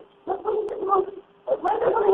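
Raised voices screaming and shouting in the background of a 911 call, heard down the telephone line in two loud bursts about a second long with a short pause between them.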